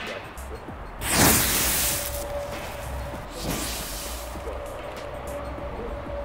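The effect charge (colour stars with metal salts) from a firework rocket ignites with a sudden loud whoosh about a second in. It then burns with a hissing rush that flares again a couple of seconds later and dies down.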